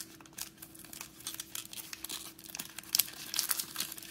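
Foil trading card pack wrapper crinkling in the hands as the cards are worked out of it, in scattered crackles that grow busier about three seconds in.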